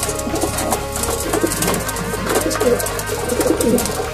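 A flock of racing pigeons cooing while feeding. Rapid small clicks of beaks pecking grain in a wooden feeder run under the coos.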